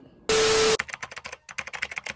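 Keyboard-typing sound effect: a rapid run of keystroke clicks, several a second. It opens with a loud half-second burst of hiss with a steady low tone in it.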